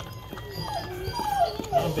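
A dog whimpering: a run of about four short, high whines that each fall in pitch, in a whelping box moments after a puppy's birth.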